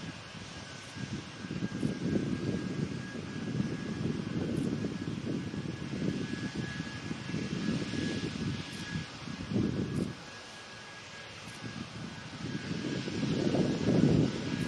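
Boeing 747's four jet engines running at taxi power as it rolls past: a steady whine over a deep, uneven rumble. The rumble dips briefly about ten seconds in, then swells to its loudest near the end as the engines go by.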